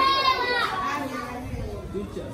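Schoolchildren's voices: a loud, high-pitched group call in the first half-second, then quieter chatter.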